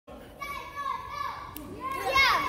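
Children's voices and chatter echoing in a large hall, high-pitched and overlapping, with a brief click about one and a half seconds in.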